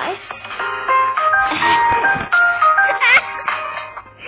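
A mobile game's intro music as the app launches: a short, bright electronic melody of single stepped notes, with a quick warbling chirp about three seconds in.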